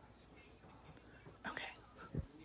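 Faint room tone with one short breathy puff of air about one and a half seconds in.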